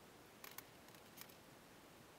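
Near silence, broken by a few faint, brief rubbing ticks as a cloth is wiped over a leather motorcycle seat cover: two about half a second in and one a little past a second.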